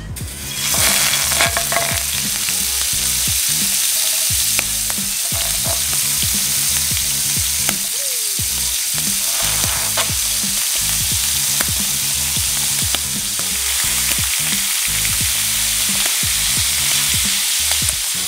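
Whole squid frying in hot oil in a pan: a loud, steady sizzle that sets in about half a second in as the first squid goes into the oil, with occasional sharp clicks of chopsticks against the pan.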